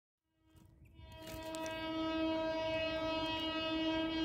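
Electric locomotive air horn sounding one long, steady-pitched blast that swells in over the first two seconds and holds.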